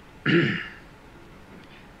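A man clears his throat once, briefly, about a quarter of a second in.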